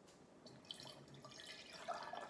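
Water pouring from a pitcher into an empty glass jar, faint, growing a little louder toward the end as the stream builds.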